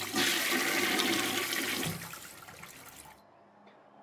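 Toilet flushing: a rush of water, loudest for the first two seconds, dying away about three seconds in.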